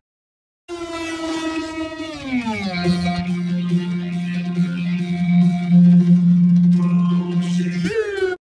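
A droning, sustained musical note with many overtones that slides down in pitch about two seconds in and then holds low and steady: a 'low battery' effect on the music, as of a player running out of power. A brief upward sweep comes right at the end.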